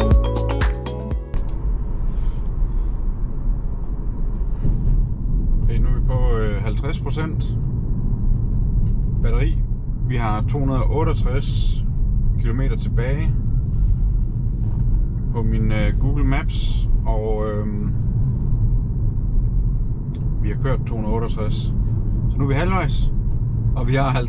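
Steady road and tyre rumble inside the cabin of a moving Tesla Model 3 Performance. An electric car has no engine note, so only the low drone is heard. Music cuts off about a second in, and a voice is heard at intervals over the rumble.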